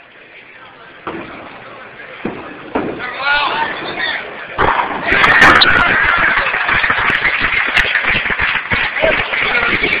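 Bowling alley: a few pin crashes early on, then a loud crash of pins about halfway through followed by loud cheering and shouting from the crowd, the reaction to the final strike of a perfect 300 game.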